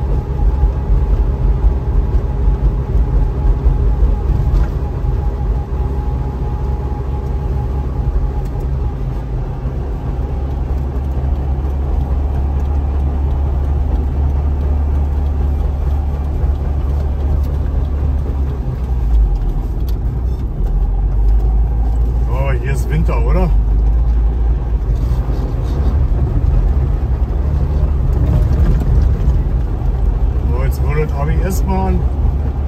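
A Trabant 601's air-cooled two-cylinder two-stroke engine running while the car drives, heard from inside the cabin with road noise. The engine note drops lower about two-thirds of the way through.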